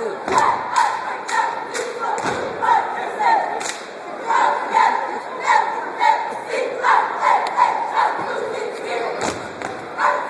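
A group of college cheerleaders chanting a cheer in unison, short shouted phrases in a steady rhythm with sharp claps. Heavy thumps of stomping on the hardwood court come a third of a second in, just after two seconds and near the end.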